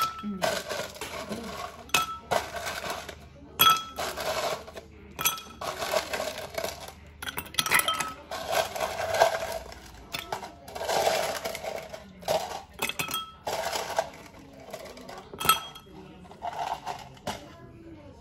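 Ice cubes scooped in a plastic cup and tipped into glass tumblers, rattling in the cup and clinking against the glass in repeated bursts. The bursts thin out in the last couple of seconds.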